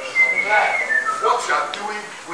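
A short high whistle, held for about half a second and then sliding down in pitch, with voices around it.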